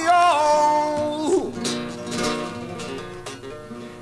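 Male flamenco singer holding a sung note that bends down and fades about a second in, then Spanish flamenco guitar playing on alone between sung lines.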